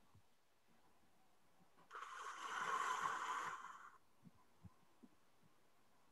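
A person breathing out near a microphone: one soft, breathy hiss that swells and fades over about two seconds.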